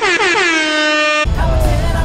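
An inserted horn-like sound effect: a bright, rich tone that slides down in pitch, then holds steady for about a second before cutting off abruptly.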